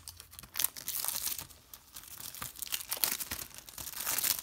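Plastic shrink wrap being torn and crinkled off a Blu-ray case, in irregular crackling bursts.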